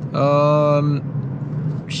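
A man's voice holding one drawn-out vowel for about a second, over a steady low hum inside the moving car's cabin.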